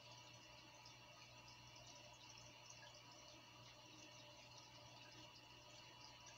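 Near silence: the faint steady hum and light water trickle of a running aquarium.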